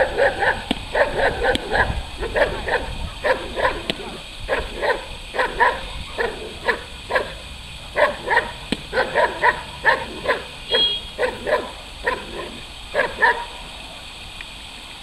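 A Belgian Malinois barking rapidly and forcefully, about two barks a second in short volleys, while it lunges on the leash at a decoy. This is the guard bark of protection training. The barking stops shortly before the end.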